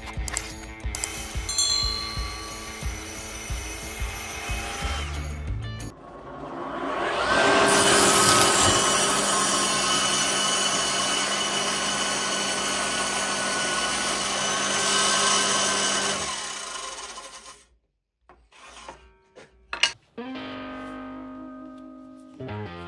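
Table saw motor spinning up with a rising whine, then ripping a small pine block through the blade for about eight seconds before running down. Background music plays before and after the cut.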